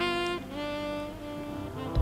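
Background music: bowed strings holding slow, sustained notes that move to a new pitch about half a second in.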